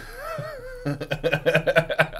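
A man's drawn-out, wavering vocal note for about a second, then laughter in quick repeated bursts.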